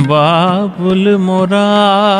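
A man singing a slow thumri phrase in Raag Bhairavi over a harmonium, with long held notes that waver and bend in small ornaments.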